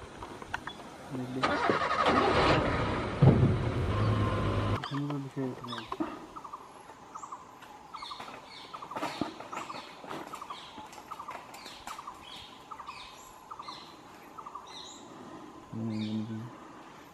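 A vehicle engine runs loud for about three seconds, starting a second or so in, then drops away. After it, birds call repeatedly with short rising chirps.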